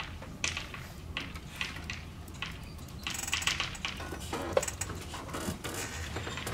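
Chalk tapping and scratching on a blackboard in short irregular strokes as words are written, over a steady low room hum.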